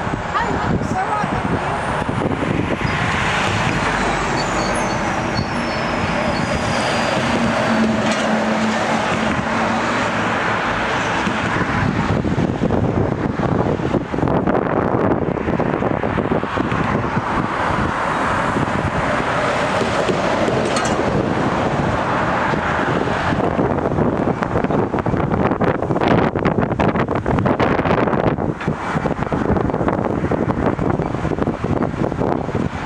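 Steady rumble of a container freight train moving slowly through a rail yard behind a Class 66 diesel locomotive. A high squeal falls in pitch a few seconds in.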